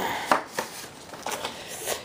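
A white paperboard box being opened by hand and a disc sleeve pulled from it: a few short scraping, rustling bursts of cardboard and paper.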